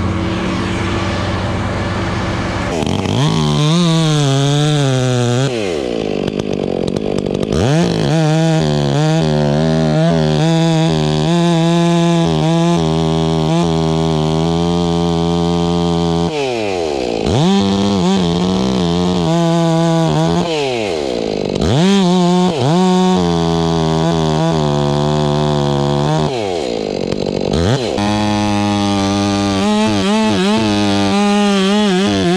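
Two-stroke chainsaw revving up and dropping back many times, held at high speed for stretches of several seconds between the revs. A steadier, lower engine drone fills the first three seconds or so before the first rev.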